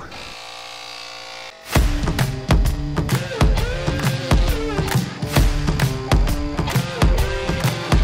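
Cordless EAFC portable tire inflator starting up and running with a steady buzzing hum as it begins filling a large off-road tire. About a second and a half in, louder rock music with drums and guitar comes in and covers it.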